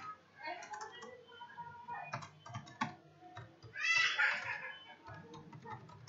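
Computer keyboard being typed on: irregular runs of quick key clicks, with short gaps between bursts, as a line of code is deleted and retyped.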